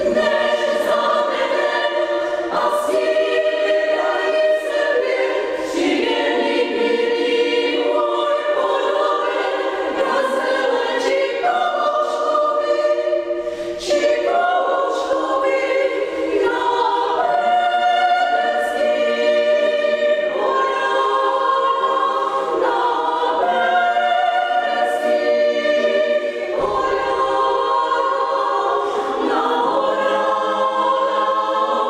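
Women's chamber choir singing a piece in several parts, upper voices only, with a brief break between phrases about fourteen seconds in.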